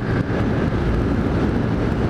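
Steady rush of wind over a helmet-mounted camera's microphone, mixed with the road and engine noise of a Honda CG Titan motorcycle cruising at highway speed.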